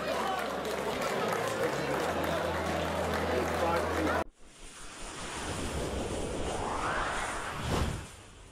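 Crowd chatter in a large hall over a steady low hum, cut off abruptly about four seconds in. Then an animated-title sound effect: a whoosh that rises in pitch and ends in a sharp swoosh near the end.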